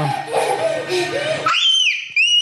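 A young child's high-pitched squeal that starts about three-quarters of the way in and is held, after a jumble of children's voices.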